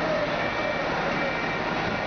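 Steady running noise of a parked coach bus, with people talking faintly in the background.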